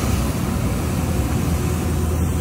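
Street sweeper truck working the cobbled street: a steady low engine hum with the even hiss of its brushes scrubbing the ground.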